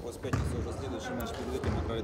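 Background voices of other people talking in the room, with a couple of low thuds.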